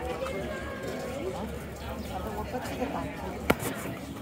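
Indistinct talk of nearby people, with one sharp click about three and a half seconds in.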